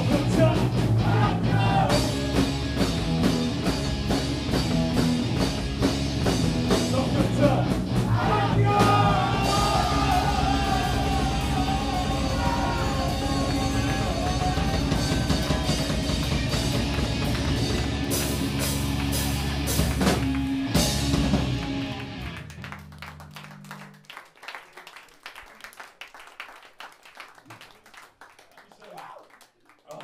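A punk rock band playing live, with distorted electric guitar, drum kit and sung vocals, comes to the end of a song about 22 seconds in with a final ringing chord that dies away. After it, the audience claps.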